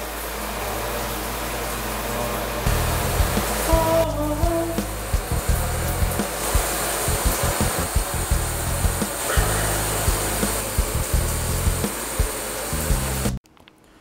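Shower spray running as a steady hiss. About three seconds in, music with a steady beat starts over it, and both cut off suddenly near the end.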